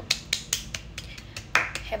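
One person clapping her hands in quick, light claps, about four a second, in a small room.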